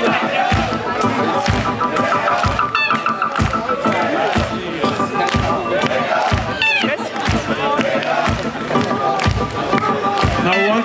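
Live band playing a song with a steady drum beat, with crowd noise from the audience.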